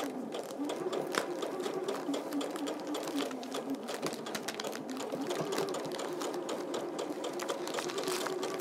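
Electric domestic sewing machine stitching a patchwork seam through cotton quilting fabric: a steady run of rapid needle strokes over the motor's hum. It runs smoothly, with no clunking, after being re-threaded and having its bobbin checked.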